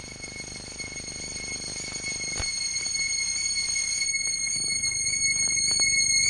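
Horror-film soundtrack effect: a high, steady whistle-like tone held over a low rumbling drone that grows steadily louder, with a single click about two and a half seconds in.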